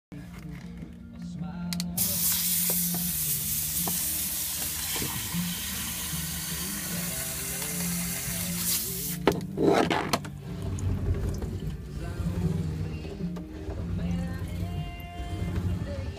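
Water jetting from a hose spray nozzle into a sliding cabin door track, flushing out grime: a steady hiss that starts about two seconds in and cuts off just after nine seconds, with a short burst of spray about a second later. Background music with low tones plays throughout.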